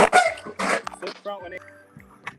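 A dog barking a few short times in the first second and a half, the last bark rising into a yip. It starts with a sharp click, over background music with steady held tones.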